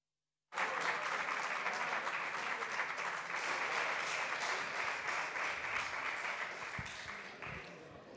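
A parliamentary group of deputies applauding in a large chamber: the clapping starts suddenly about half a second in, holds steady, and thins out near the end.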